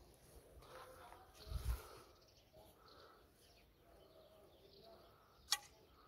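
An arrow shot from a bow: a low, dull thud about a second and a half in, then a single sharp click near the end.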